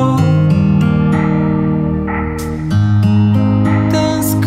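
Acoustic guitar strummed in a slow song, with chords ringing and changing shortly after the start and again nearly three seconds in.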